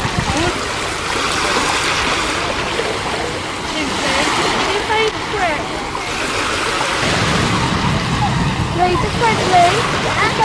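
Small waves washing in on a sandy beach, a steady hiss of surf, with distant voices of people on the beach. A low rumble of wind on the microphone comes in about seven seconds in.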